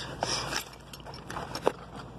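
Handling noise from an ironworker's tool belt and harness: fabric and gear rustling, then a sharp click about 1.7 seconds in.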